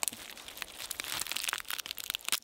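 Dry crackling and crunching of plant matter, a quick run of many small, sharp snaps.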